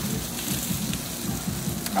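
A steady hiss of outdoor background noise, with faint low voices murmuring under it.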